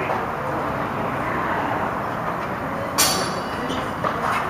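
A single sharp clack of sparring longswords meeting, about three seconds in, over a steady background rumble.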